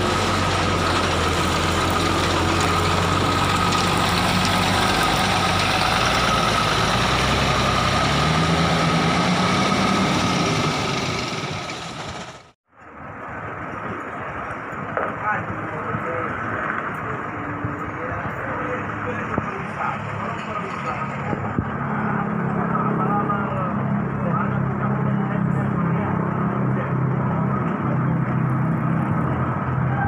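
Diesel coach bus engine running close by, its note rising a few seconds before the sound cuts off abruptly about 12 seconds in. After the cut, another diesel bus's engine runs at a distance, growing louder and steadier from about two-thirds of the way through.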